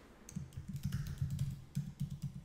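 Typing on a computer keyboard: a quick run of about a dozen keystrokes as a password is entered.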